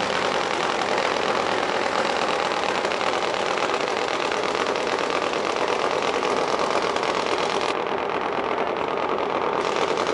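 Harley-Davidson V-twin drag bike engine idling steadily with a fast, even, loud rattle of firing pulses.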